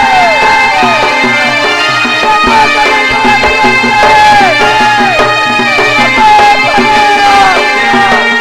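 Loud Odia danda nacha folk music: a melody of repeated falling notes, about two a second, over a steady percussion beat.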